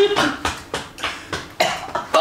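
A person coughing in a run of short, sharp coughs, gagging on a foul-tasting Bean Boozled jelly bean.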